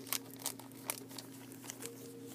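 Plastic comic book bags crinkling in short, scattered rustles as bagged comics are handled and swapped.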